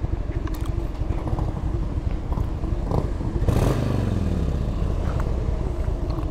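2001 Harley-Davidson Heritage Softail's Twin Cam V-twin running at idle, with a short rev about halfway through that falls back down to idle.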